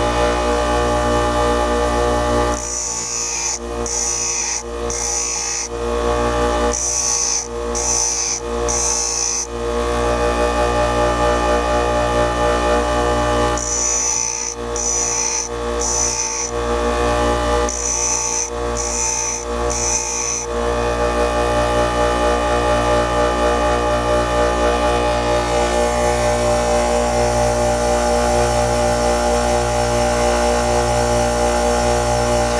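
Bench grinder motor running with a steady hum while a high-speed steel drill bit is pressed to the spinning abrasive wheel in short grinding passes. Each pass is a brief hiss of about half a second, and they come in four sets of three, the bit flipped between sets to grind both cutting lips of a badly over-relieved point. After the last set the grinder keeps running alone.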